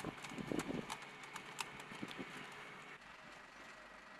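Hurried footsteps of several people on gravelly dirt, irregular crunching steps that are busiest in the first second.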